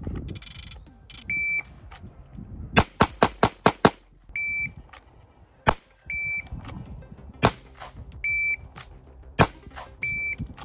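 Shot timer beeps, each followed about a second and a half later by shots from a compensated 9mm Sig P365 X-Macro pistol. After the first beep comes a fast string of about six shots; after each of the next three beeps comes a single shot.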